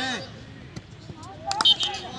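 A volleyball being struck, heard as a quick cluster of sharp slaps about one and a half seconds in, over people's voices.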